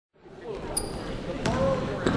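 Basketball bouncing on a hardwood gym floor, a few sharp knocks, over spectators' chatter that fades in just after the start and grows louder.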